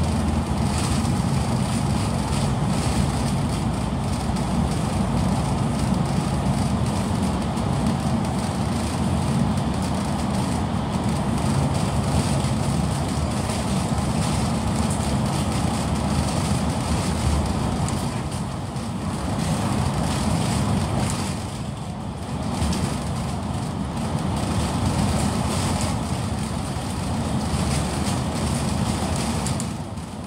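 KMB bus running on the road, heard from inside the passenger cabin: a steady low engine drone with road and tyre noise, easing briefly twice about two-thirds of the way through.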